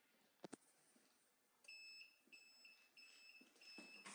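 Electronic beeper of a heat press's digital controller sounding a repeated high, steady beep in short runs of about a third of a second each, starting a little under two seconds in. A sharp double click comes just before the beeping.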